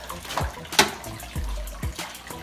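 Internal aquarium filter running in a plastic-bin tank, its outflow churning and splashing the water with a good flow. A sharp click comes a little before the middle, with a few low thumps.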